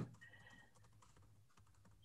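Near silence, with a few faint clicks of typing on a computer keyboard.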